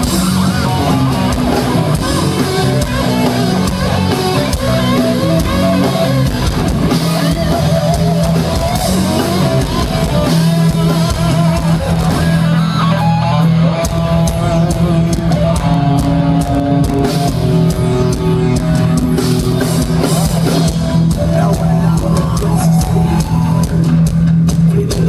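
Live rock band playing loud and steady: electric guitar over bass guitar and drum kit.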